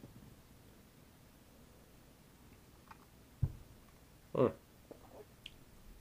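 Quiet room with a few faint clicks and one short, soft thump about three and a half seconds in: a drinking glass being set down on the table after a sip.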